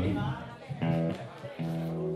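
Electric guitar playing two chords, the second one held and ringing on.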